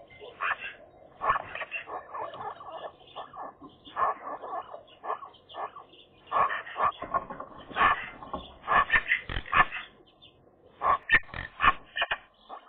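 Several Eurasian magpies calling to one another in low-aggression winter "small talk" around their nest. The calls are a rapid, varied run of short notes, with a brief pause about ten seconds in.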